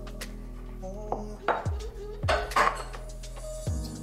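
Wire whisk stirring flour into batter in a glass mixing bowl, scraping and clinking against the glass in short strokes, the loudest about one and a half and two and a half seconds in. Background music plays under it.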